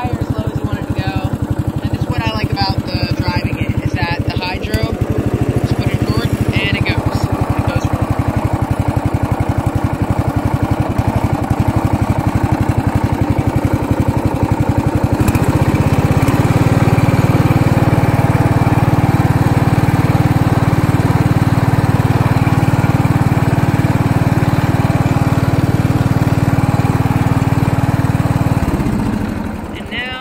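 John Deere Sabre riding mower's 16 hp Briggs & Stratton Vanguard V-twin engine running steadily. About halfway through it gets louder and fuller, then it dies away near the end.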